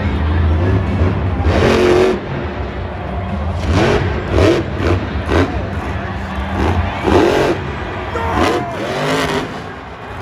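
Grave Digger monster truck's supercharged V8 running with a heavy low rumble, revved in about eight sharp throttle bursts as the truck is balanced up on its nose.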